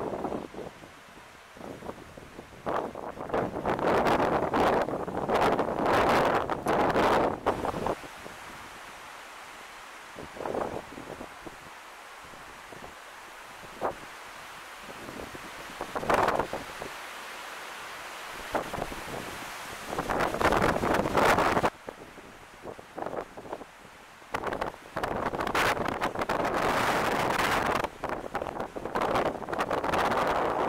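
Gusty wind buffeting the microphone, with leaves rustling, coming in irregular surges of a few seconds each with calmer stretches between.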